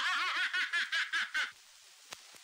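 A man laughing in a quick run of ha-ha bursts, about five or six a second, that breaks off about one and a half seconds in.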